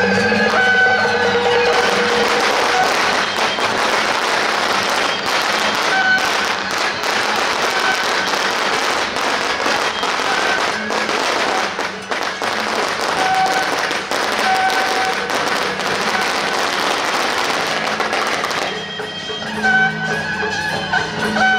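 A long string of firecrackers crackling rapidly for about seventeen seconds, starting about two seconds in and stopping shortly before the end, over traditional procession music that is heard plainly before and after the crackling.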